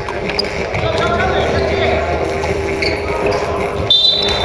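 Basketball game sounds in a large gym hall: players' voices calling out over a ball bouncing on the court, with a few sharp knocks.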